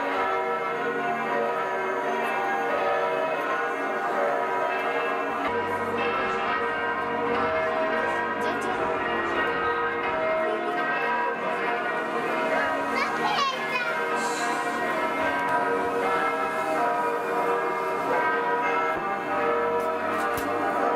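Church bells ringing steadily as the bride arrives, with the voices of people and children underneath.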